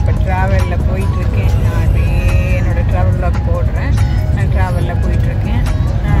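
Steady low rumble of a moving passenger train heard from inside the carriage, with a woman's voice talking over it.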